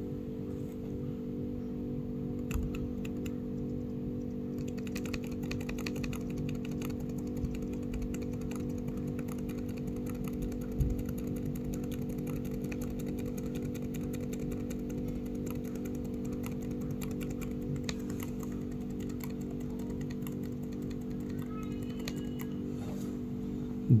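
Dell laptop's F12 key tapped over and over in quick, light clicks during a restart to call up the one-time boot menu, over a steady low hum.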